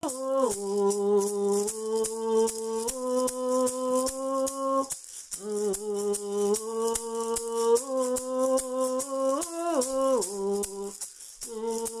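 A woman hums a slow, wordless melody of held notes that slide between pitches, while a hand-shaken gourd maraca keeps a steady rattling beat.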